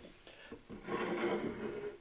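A man's low, drawn-out closed-mouth hum, about a second long, the kind of "mmm" given while tasting a spirit. A light tap about half a second in, as a glass bottle is set down on the table.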